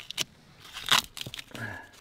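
A few short crunchy clicks and scrapes of plastic being handled at the open end of a PVC electrical conduit, the loudest about a second in.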